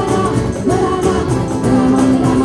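Live folk music: an organetto (diatonic button accordion) and acoustic guitar play over a steady hand-percussion beat, with a woman singing.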